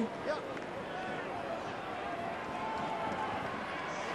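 Steady, low stadium crowd noise with faint scattered voices at an Australian rules football match, as the crowd waits on a set shot at goal.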